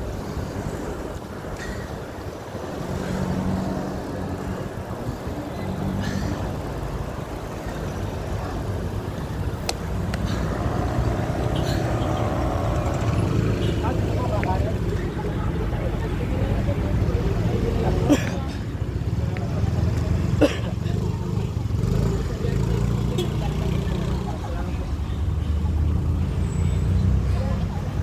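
Wind rumbling on the microphone of a camera riding on a moving bicycle, over road traffic noise, with two sharp clicks about two-thirds of the way through.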